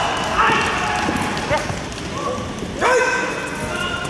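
Short, sharp shouts from several voices at a karate kumite match, three shouts about a second apart, over a steady bed of hall noise with scattered thuds.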